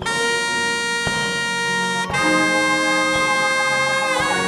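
Saxophone holding one long note, then a second, lower one about halfway, over a church band with a few soft drum taps.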